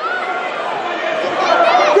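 Several voices shouting over one another from spectators and coaches at the mat, getting louder near the end.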